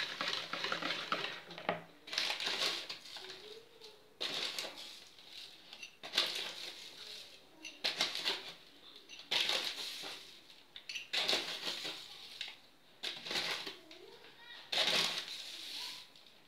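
A brown paper bag of fine semolina rustling as a drinking glass is dipped in and filled, in short crackly bursts about every two seconds.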